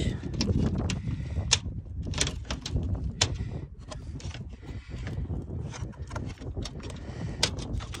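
Irregular sharp clicks and scrapes of a plastic bumper grille and its wire mesh being handled and pressed into place, over a steady low rumble.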